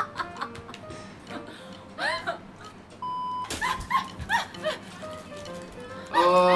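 Audio of a played video clip: women's voices and squeals over light background music. About three seconds in comes a half-second steady beep, like an edited-in sound effect.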